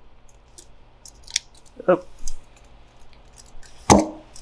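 Small metal parts and a hand tool clicking and scraping lightly against a carburetor body while a jet is fitted, with a single sharp knock near the end.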